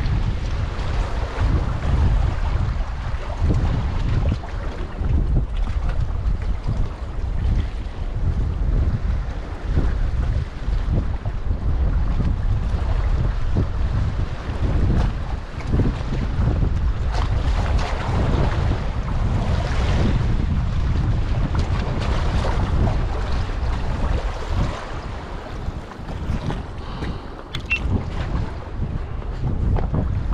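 Wind buffeting the microphone in a steady, gusting low rumble, with waves lapping against the rocks underneath.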